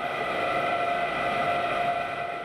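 Crushing machine grinding oral rehydration salt ingredients, running steadily with a level mechanical drone and several held whining tones.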